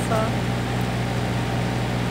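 Ferry engine running with a steady low hum.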